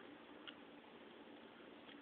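Near silence with a faint single click about half a second in: the detent of a rotary encoder clicking as its knob is turned one step.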